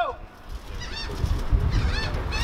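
A man's amplified shout through a handheld microphone trails off just after the start. After it comes a low, uneven rumble with faint voices.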